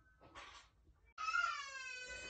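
A young child crying in the background: one long, high wail that starts about a second in and slowly falls in pitch.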